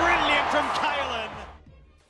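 A commentator's raised voice over stadium crowd noise during a line break. It all fades out to near silence near the end.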